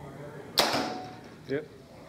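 A Bowtech Guardian compound bow shooting an arrow: one sharp crack about half a second in that dies away over roughly half a second.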